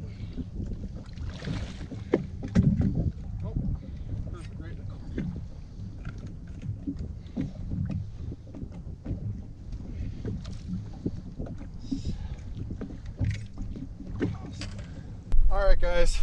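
Water splashing and lapping at the side of a boat, with wind on the microphone and scattered knocks and clicks as a musky is handled in a landing net, the loudest splashes coming about three seconds in.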